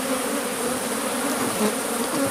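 Many honeybees buzzing around an opened top-bar hive, a steady drone with several wavering pitches.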